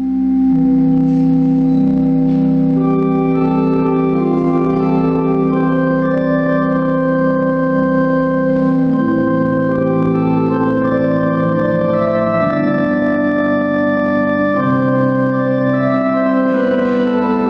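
Pipe organ playing slow, sustained chords in a large stone church, the chords shifting every second or two. A deep held bass note sounds under the first half and stops about halfway through.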